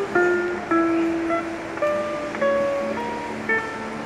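Acoustic-electric guitar played solo with no voice. Picked notes and chord tones ring out one after another, a new one starting about every half second to second.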